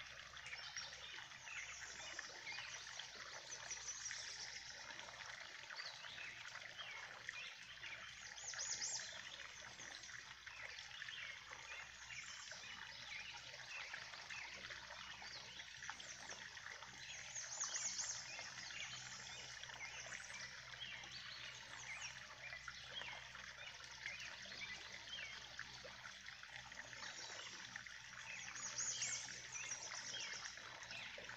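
Runoff water spilling from a drain pipe into a pond after rain: a steady splashing trickle.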